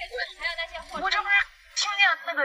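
Speech only: a quiet voice talking briefly, breaking off about one and a half seconds in before louder talk resumes near the end.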